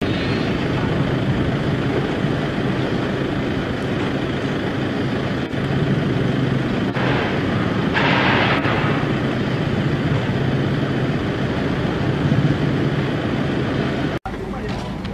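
A vehicle engine running steadily in outdoor noise, with a low steady hum and a short hiss about seven to eight seconds in.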